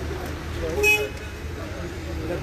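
A short, single car horn toot about a second in, over street traffic noise and low voices.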